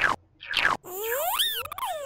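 Computer puzzle game sound effects: a couple of short falling blips, then from about a second in a tone that slides up and back down, with a high hiss over it, as the program finishes running and the puzzle is solved.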